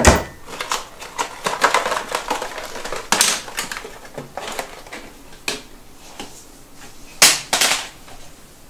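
Kitchen handling sounds: a wooden cabinet door bangs shut right at the start, the loudest knock, then a run of clicks and clatter as items are picked up and set down on the counter. Near the end a kitchen drawer is pulled open with two quick scraping rushes.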